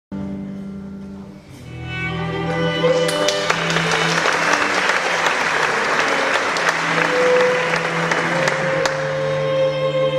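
Orchestral string section playing sustained chords, with audience applause swelling about two seconds in and fading out near the end.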